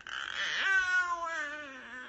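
A single drawn-out wailing cry, falling steadily in pitch over about a second and a half.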